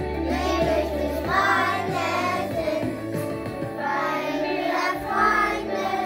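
A children's song: young voices singing over an instrumental accompaniment with sustained bass notes.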